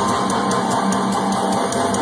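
Heavy metal band playing live at full volume, guitars and drums running together into a dense, steady wall of sound.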